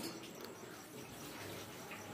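Faint wet mouthing sounds: a white puppy chewing and gnawing on a person's fingers.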